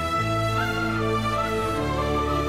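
Slow, sad background score: a held melody line with small ornaments over sustained chords and a low bass, the harmony shifting near the end.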